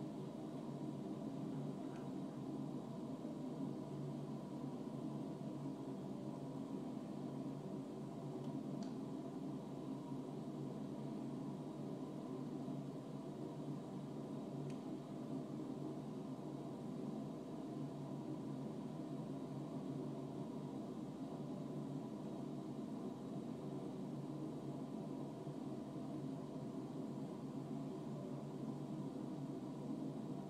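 Steady low hum and rush of indoor room noise, unchanging throughout, with no distinct events.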